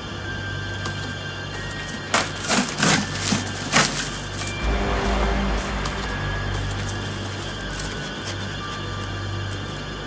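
Background music with a low steady drone. Between about two and four seconds in come a few loud, sharp ripping strokes: a blade slicing through plastic wrap and a cardboard carton.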